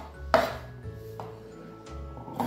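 Large steel tailor's shears cutting through fabric on a table: one sharp snip about a third of a second in, then a pause while the shears are repositioned.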